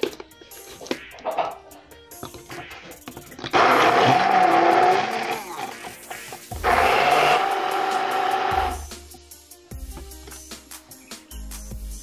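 Hand-held immersion (stick) blender run in two bursts of about two seconds each, a steady motor whine with the noise of the blades chopping raw garlic and shallots in a plastic jug.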